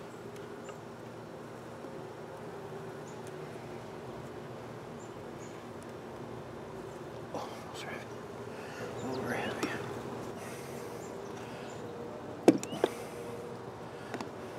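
Honeybees humming steadily at an open top bar hive. Near the end come two sharp knocks, close together, as the wooden top bars are pushed back against each other.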